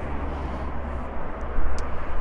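Steady outdoor background noise, a low rumble with a hiss over it, with a couple of faint clicks in the second half.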